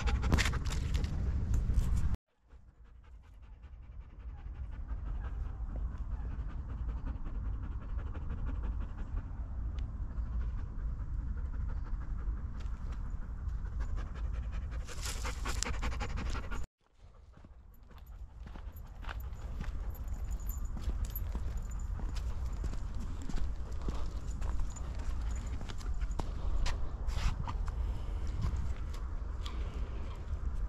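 Black Groenendael Belgian Shepherd dog panting hard close to the microphone. The sound cuts out abruptly twice and fades back in.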